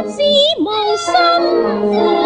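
Cantonese opera (yueju) music: a high sung voice sliding between pitches, over sustained instrumental accompaniment.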